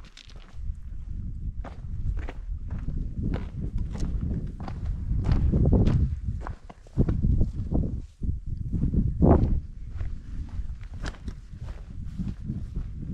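Footsteps of a hiker on a stony, grassy mountain path at a steady walking pace, about two steps a second, over a loud low rumble on the microphone.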